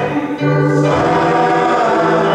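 Men's choir singing a gospel song in long held chords, with a brief break between phrases just after the start.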